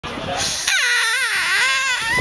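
A blade of grass held taut between the thumbs and blown, giving a loud whistle that starts about two-thirds of a second in and wavers down and up in pitch.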